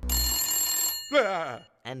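A telephone bell rings, clear and steady, for about a second, then stops. A voice with a strongly sliding pitch follows at once.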